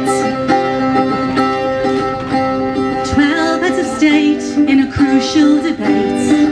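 Live folk song: an acoustic guitar playing, with a woman's voice singing over it from about three seconds in.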